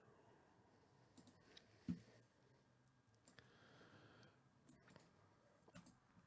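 Near silence with a few faint computer mouse clicks, the loudest a dull click about two seconds in.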